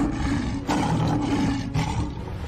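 Lion roaring twice in a row, the second roar longer and starting just under a second in.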